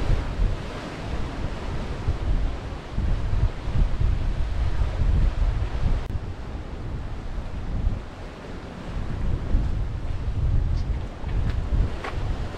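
Strong wind buffeting the microphone in gusts, over sea waves breaking on a rocky shore.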